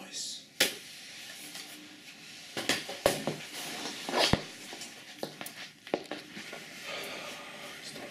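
A man's voice, not clear words, with several sharp knocks and clatters, the loudest about half a second, three seconds and four seconds in, as he handles a laptop and gets up from a chrome-framed lounge chair.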